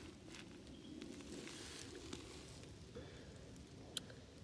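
Faint rustling with a few light clicks over a quiet outdoor background.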